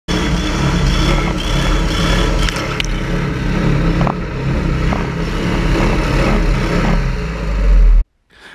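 Gator-Tail GTR surface-drive mud motor running under load, its prop churning through mud and shallow water. The drone is steady, with a few sharp ticks, possibly mud hitting the camera, a third of the way in. The low end swells just before it cuts off.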